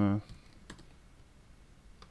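A few faint computer keyboard keystrokes, spaced apart, as a short password is typed.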